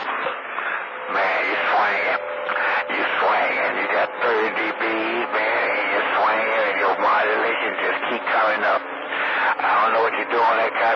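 A man's voice coming through a CB radio receiver on channel 28, carried in on long-distance skip: narrow-band and hard to make out, with a brief steady tone about a second in.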